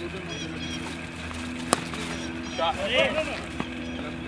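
Distant voices of players calling out across an open field, with a single sharp knock a little before the midpoint and a steady low hum underneath.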